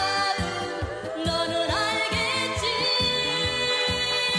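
A man and a woman singing a Korean trot duet over a band with a steady drum beat. They hold long notes, with vibrato about halfway through.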